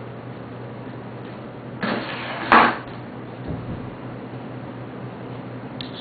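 Handling noise: two short clattering sounds close together about two seconds in, the second louder, over a steady low hum.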